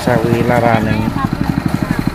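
Rice thresher running with a steady, rapid beat as rice stalks are fed into it. Voices talk over it during the first second.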